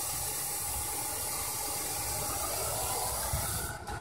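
Aerosol spray can sprayed in one continuous hiss of about four seconds, cutting off just before the end.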